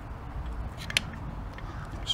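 A few short clicks and a brief crunch about a second in, over a low steady hum, as the fuel rail is worked by hand to pull the O-ring-sealed injectors out of the intake manifold.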